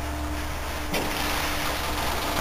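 Large caged electric ventilation fan running: a steady rush of air with a faint low hum.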